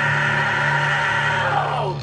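Amplified electric guitars and bass holding a sustained, ringing chord; about one and a half seconds in the pitch slides down and the sound breaks off just before the end.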